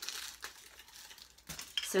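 Aluminium foil crinkling softly as a foil-wrapped cardboard tube is handled, with a brief sharper noise near the end.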